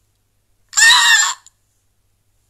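A woman's short, high-pitched vocal squeal, one cry of under a second, starting about a second in.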